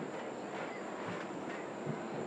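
Steady outdoor background noise: an even hiss with a faint, constant high-pitched whine over it, and no distinct event standing out.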